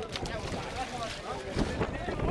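Outdoor background voices of people talking and calling, with wind rumbling on the microphone and a knock about one and a half seconds in.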